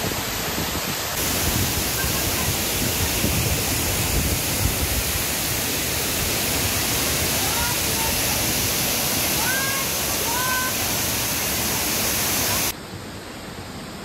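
Waterfall plunging into a pool close by: a loud, steady rush of falling water. It drops off abruptly about 13 seconds in to a much quieter background.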